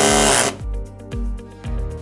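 Electric motor of a DMC HXE4-series battery-powered crimp tool running in a short burst of about half a second as the trigger is squeezed, driving the ram against the die removal tool to push the bottom die out. Background music goes on after it.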